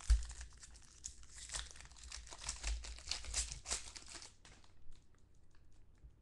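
Trading-card pack wrapper being torn open and crinkled by hand, a dense crackling for about four seconds, then a few light clicks near the end.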